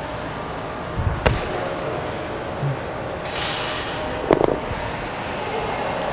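A thud about a second in as a dumbbell clean is performed, then, a little after four seconds, a pair of dumbbells set down on a rubber gym floor with a short metallic clank. Low steady room hum throughout.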